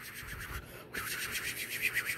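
Rustling, rubbing handling noise from a plush toy being swooped about by hand, in two stretches with a short break just before a second in.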